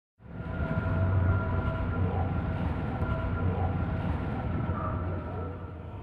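Opening sound design of a TV documentary title sequence: a deep, steady rumble with a few high tones held over it. It starts abruptly a moment in and stays level throughout.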